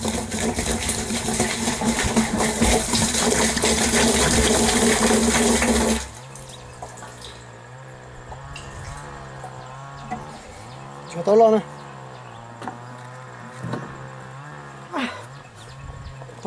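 Liquid pouring from a plastic jug into a plastic barrel, a loud steady splashing rush that stops suddenly about six seconds in. After that it is much quieter.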